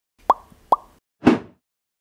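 Two short pop sound effects about half a second apart, each a quick upward bloop, followed by a brief whoosh: editing sound effects for an animated title card.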